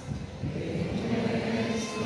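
Many voices singing together in a hymn to the Virgin Mary, with a short break between phrases at the start and the sung notes taking up again about a second in, over a low rumble of crowd noise.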